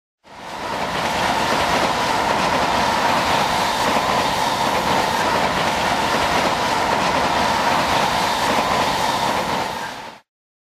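Sound effect of a train running past: a steady rumble that fades in just after the start, holds level, and fades out at the end.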